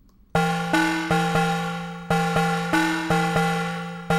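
Electronic drum groove from an Ableton Live drum rack (the Granular Stretch kit) playing a rhythm recorded as MIDI from Reaktor's Newscool sequencer. It comes in about a third of a second in as an uneven, repeating pattern of glitchy, pitched percussion hits, each ringing briefly and fading: a basic groove.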